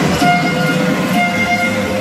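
Live stage music: long held violin notes over a pulsing dance beat.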